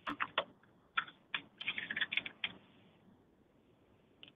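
Typing on a computer keyboard: a quick, uneven run of key clicks, thickest around two seconds in, which stops a little past halfway.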